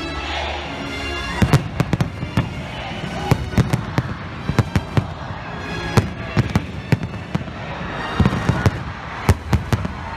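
Aerial fireworks bursting in a rapid, irregular string of sharp bangs, starting about a second and a half in, with music playing underneath.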